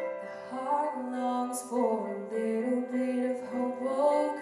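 Women's voices singing a slow song together in harmony, with a sharp sibilant 's' standing out about a second and a half in.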